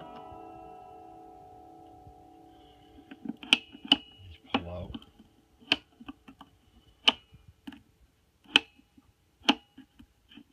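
Strings of a Taylor electric guitar ringing out in a chord that fades away over the first three seconds. Then comes a series of sharp metallic clicks and taps, roughly one a second, as the Bigsby vibrato arm is handled and moved.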